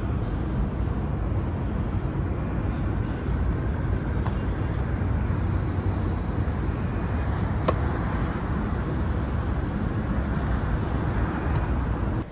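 Steady low rumble of city traffic and outdoor noise in a parking lot. Three sharp slaps of a football caught in the hands come about four, seven and a half, and eleven and a half seconds in.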